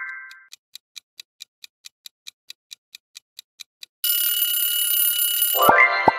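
Quiz countdown sound effects. A rising chime fades out, then a clock ticks about five times a second for some three seconds. An alarm-clock bell rings for nearly two seconds, and a rising chime with a thump cuts it off as the time runs out and the answer comes up.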